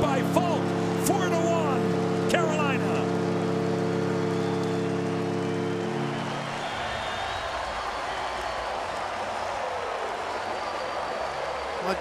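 Arena goal horn blowing one long, steady multi-tone blast for a home-team goal, over a cheering crowd; the horn cuts off about six and a half seconds in, leaving the crowd noise.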